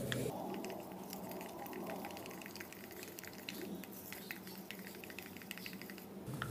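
Stir stick stirring thinned acrylic and enamel paint in a small plastic cup: faint, quick, irregular clicks and scrapes of the stick against the cup wall.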